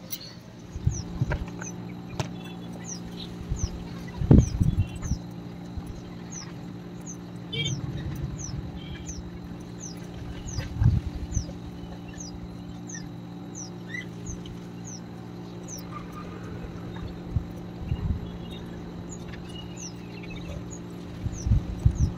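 A small bird calling over and over with short, high, falling chirps, about one or two a second, over a steady low hum and a few dull thumps.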